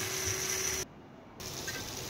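Mustard oil sizzling on a hot iron tawa, a steady hiss that cuts out abruptly for about half a second near the middle and then resumes a little quieter.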